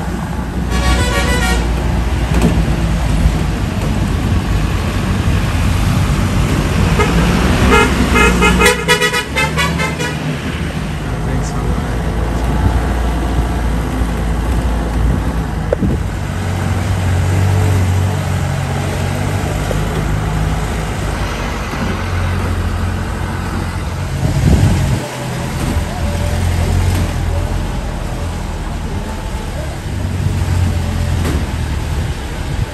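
Jeep engine running with road noise as the vehicle drives, and its horn sounded in quick repeated toots about a second in and again from about eight to ten seconds in.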